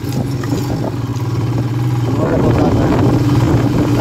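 Royal Enfield Himalayan's single-cylinder engine running as the motorcycle rides along a rough road, its note rising slightly and getting louder about halfway through as it picks up speed.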